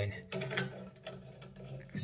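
Brass threaded fitting with a rubber washer being screwed by hand onto a drain valve: a few faint metallic clicks and scrapes of thread on thread.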